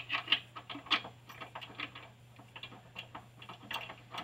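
Irregular light metallic clicks and taps of a nut, washer and bolt being handled and threaded by hand as a bypass oil filter housing is fitted to its steel mounting bracket.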